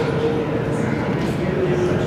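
Indistinct chatter of several people talking at once in a large hall with a hard floor, a steady background murmur of voices.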